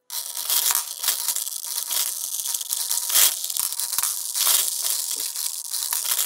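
Metal marbles clattering and clicking against each other as they are fed into, and roll along, the lanes of a plywood marble divider prototype. The marbles are moving very slowly along the lanes.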